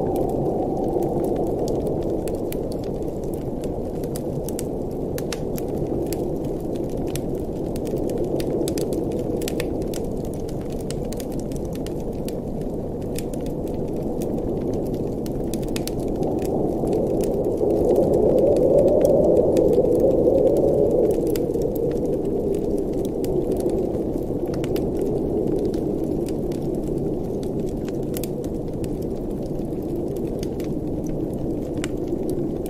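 Wood fire crackling in a fireplace, with scattered small snaps and pops over a low, steady blizzard wind that swells into a stronger gust about eighteen seconds in and eases again a few seconds later.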